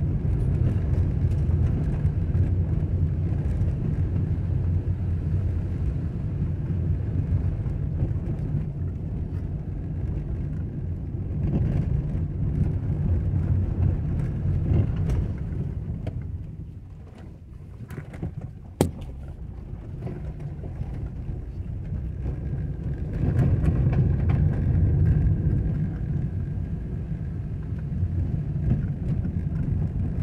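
Vehicle driving on a dirt road, heard from inside: a steady low rumble of engine and tyres on the sandy surface. The rumble eases off for a couple of seconds a little past halfway, and a single sharp click follows.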